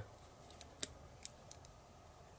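Light clicks of small plastic and metal parts handled in the fingers as a plastic spacer is fitted onto a mounting screw: about five short clicks, the sharpest a little under a second in.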